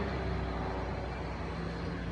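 Steady low background hum and rumble with no distinct event in it.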